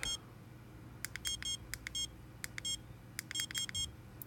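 ISDT BC-8S battery checker's buzzer giving short, high-pitched beeps, about a dozen in irregular quick succession, some in quick pairs. These are key-press beeps as its buttons are pressed to step through the battery-type settings.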